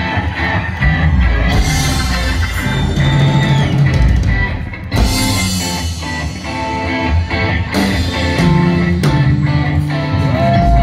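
Live rock band playing, electric guitar prominent over the drums.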